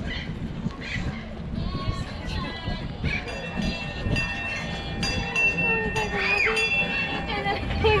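A small trackless zoo train coming up close, sounding a steady whistle of several tones at once from about three seconds in, over a low rumble and background voices.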